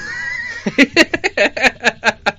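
A man laughing hard: a high, wavering squeal at first, then a quick run of short bursts about five a second.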